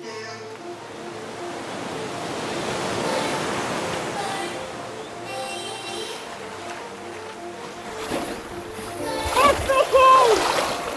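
Background music over water splashing and surf as a diver in fins steps into the sea, the water noise swelling in the first half. Near the end a voice loudly exclaims.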